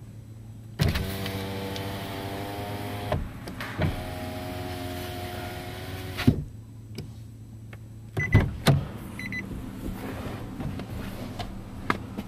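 Nissan X-Trail rear door power window motor running twice, each time with a steady hum that stops with a thud as the glass reaches its end. A pair of knocks follows about eight seconds in.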